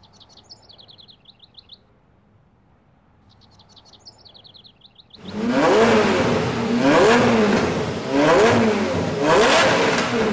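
Small birds chirping in quick high trills. About five seconds in, a Lamborghini's engine comes in loud and is revved several times, its pitch rising and falling about four times.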